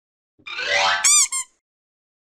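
Cartoon sound effects of a channel logo sting: a rising glide, then two short, high, bouncing boings, the second softer, all over about a second and a half in.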